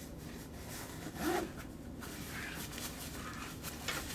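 Nylon backpack being handled: fabric rustling, a zipper being worked, and a few light knocks as the bag is turned over.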